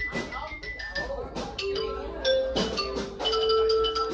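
Mallet percussion, xylophone-like, playing quick struck notes, with one note held for about two seconds in the second half, over background voices.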